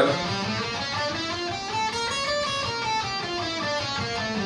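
Schecter Hellraiser C1 electric guitar playing a single-note scale run that climbs and then comes back down. It is the second mode of the minor scale with the harmonic-minor sharp seven and the blues sharp four played together.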